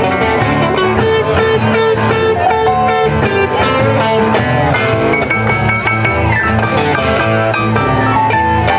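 Live blues band playing, with electric guitar to the fore over keyboard and drums.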